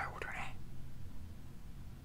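A man's brief whisper in the first half second, with a few lip clicks, then only a steady low room hum.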